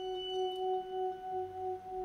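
Music: a held organ drone on one pitch and its octave, gently pulsing in level, with a faint low note joining about two-thirds of the way through.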